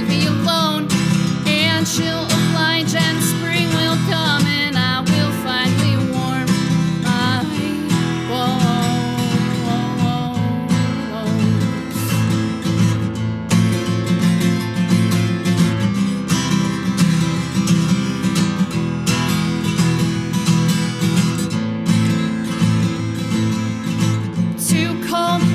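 Acoustic guitar strummed and picked in an instrumental passage of a live song, steady chords with no lyrics sung.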